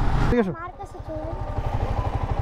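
Motorcycle engine running at low revs with an even, rapid low pulse. It follows a man's voice that trails off with a falling tone in the first half second.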